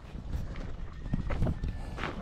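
Footsteps on loose rock and gravel, a series of uneven steps at roughly two a second.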